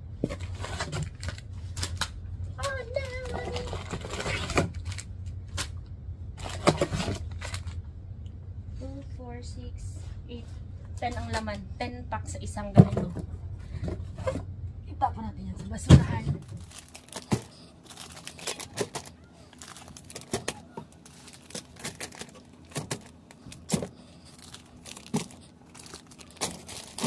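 Cardboard case of baby wipes and its plastic-wrapped wipe packs being handled: repeated rustling, crinkling and light knocks as the packs are lifted out and set down. About two-thirds of the way in the low background hum drops away, and the packs are placed one by one with sharper clicks and crinkles.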